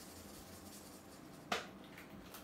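Faint scratching of a felt-tip pen colouring on paper, with one sharp click about one and a half seconds in.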